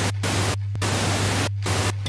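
Television static: a loud, even hiss with a steady low hum beneath it, cutting out briefly a few times.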